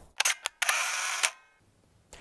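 Edit transition sound effect: a few sharp clicks, then a short hissing sweep that cuts off suddenly.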